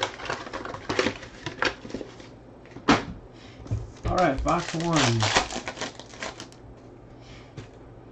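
Trading card packs and cards being handled: a string of sharp clicks and crinkles as a pack is opened and the cards are sorted. There is a short stretch of a man's voice about halfway through.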